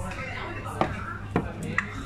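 Background pub chatter of several voices, with three short sharp clicks in the second half.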